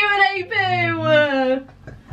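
A woman's voice in one long, drawn-out vocal sound without clear words, falling steadily in pitch over about a second and a half.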